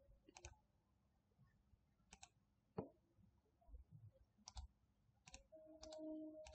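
Faint computer mouse clicks, each a quick press-and-release pair, about four spread over the few seconds, with one sharper single tick near the middle, against near silence.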